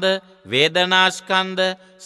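A Buddhist monk's voice intoning a sermon in a chant-like sing-song, the pitch held level through short phrases with brief pauses between them.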